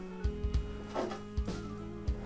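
Soft background music with steady held notes and a few fresh note attacks.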